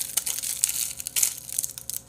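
Crinkling and rustling of a plastic Haribo gummy-candy bag being handled, an irregular crackle of small clicks.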